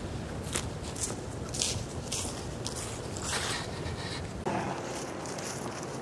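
Footsteps through grass and dry fallen leaves: a series of short, soft crunches roughly half a second apart over a steady low outdoor rumble, which drops away near the end.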